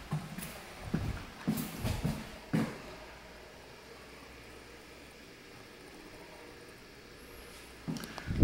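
Footsteps on a hard floor, about six steps in the first three seconds, then only faint room tone.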